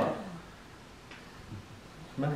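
A man's voice trails off at the start, then a quiet room with a couple of faint, brief soft noises.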